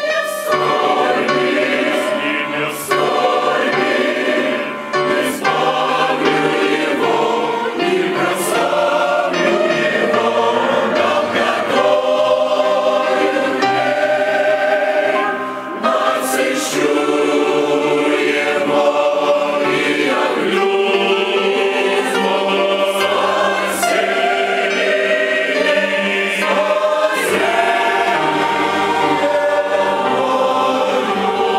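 A large mixed church choir of men's and women's voices singing, with short breaks between phrases near the start, about five seconds in and about fifteen seconds in.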